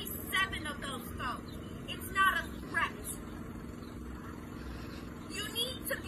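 A woman speaking in short bursts over the steady low hum of an idling car engine.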